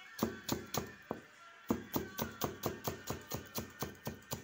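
Chef's knife chopping red onion on a cutting board: quick, even knocks about four a second, with a short pause about a second in, over soft background music.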